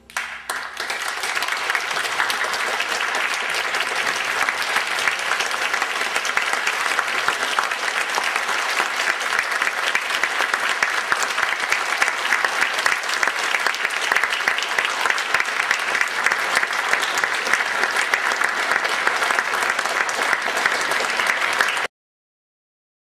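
Audience applause in a concert hall, dense and steady, starting as the orchestra's final chord dies away and cutting off abruptly near the end.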